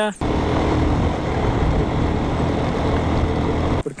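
Steady rushing noise of wind buffeting the camera microphone, heaviest in the low rumble, cutting in abruptly just after the start and cutting out abruptly near the end.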